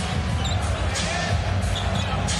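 A basketball being dribbled on a hardwood court, with a few sharp bounces about half a second apart, over the steady noise of an arena crowd. There is a brief high squeak about a quarter of the way in.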